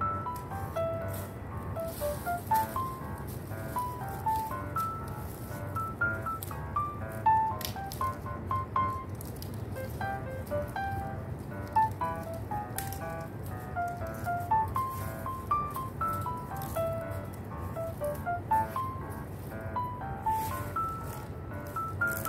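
Background music: a light melody of short, separate notes hopping up and down in pitch over a soft low bed.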